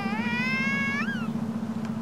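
A kitten meowing: one long, high meow that bends upward at its end about a second in, over a low steady hum.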